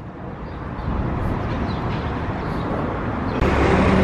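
Road traffic noise: a vehicle going by, its sound swelling over the first second and then holding steady. Near the end it gives way to a lower, steadier street rumble.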